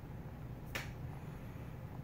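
A single sharp click about three-quarters of a second in, as a metal spoon spreading sauce taps against a metal baking pan, over a steady low hum.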